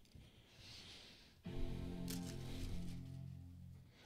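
Apple MacBook Pro startup chime: a single sustained chord that sounds suddenly about a second and a half in and fades away over about two seconds. It signals that the laptop is powering on, triggered by opening the lid. Before it there is faint handling noise as the lid is lifted.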